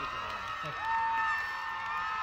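Concert crowd screaming and cheering, with long, high held screams that swell and fade over one another.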